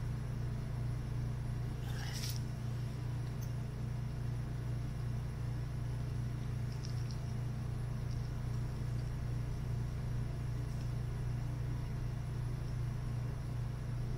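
A steady low hum throughout, with a sharp click about two seconds in and a few faint ticks later, from tweezers working a ribbon cable connector on a circuit board.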